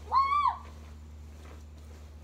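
A young child's short, high-pitched vocal call near the start, about half a second long, rising then falling in pitch.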